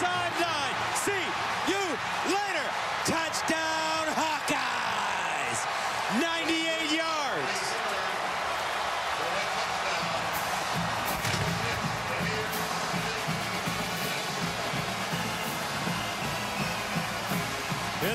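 Stadium crowd cheering a kickoff-return touchdown, with excited shouting in the first several seconds. From about ten seconds in, a marching band's brass and drums play over the crowd.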